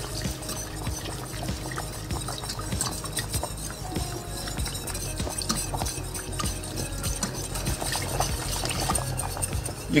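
Wire whisk stirring a butter-flour roux in a stainless steel saucepan, with many small irregular clicks of the whisk against the pan, as milk is poured in a thin stream to make a white sauce.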